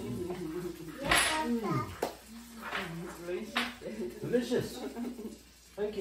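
Voices talking at a dinner table, words not made out, with two sharp clicks of tableware about two seconds and three and a half seconds in.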